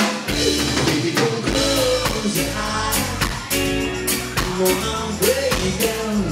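Live rock band playing: a drum kit keeping a steady beat under electric guitar and bass guitar.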